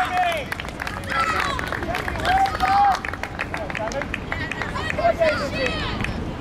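Voices on a football pitch shouting and calling out during play, several short raised calls over the general noise of the game, with scattered short knocks.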